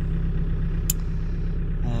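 The Optare Alero minibus's diesel engine idling steadily, heard from inside the cab as a low, even rumble. A single sharp click comes about a second in, as a dashboard rocker switch is pressed.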